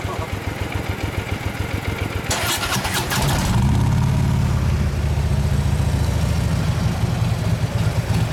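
A 2016 Harley-Davidson Ultra Limited's Twin Cam 103 V-twin, breathing through Vance & Hines pipes, idles with an even pulsing beat. Between two and three seconds in there is a short noisy burst, and from about three and a half seconds the engine runs louder and steadier at higher revs.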